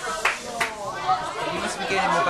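Several people chatting in a room, with two sharp knocks in the first second.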